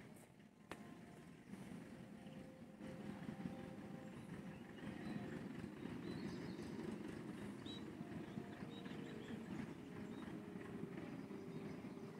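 Quiet outdoor ambience: a steady low rumble with a few faint bird chirps.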